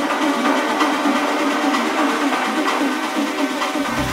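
Progressive techno played over a festival sound system during a breakdown, with the kick drum and bass cut out and only percussion and higher synth layers left. The low end starts to come back in right at the end.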